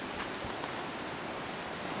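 Steady rushing outdoor noise, like wind across the camera microphone, with a faint knock about half a second in.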